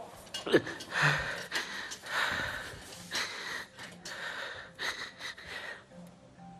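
A man sobbing in pain: ragged, wheezing, gasping breaths with a short falling whimper about half a second in.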